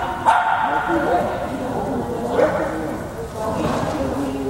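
A small dog barking several times during an agility run, with voices alongside.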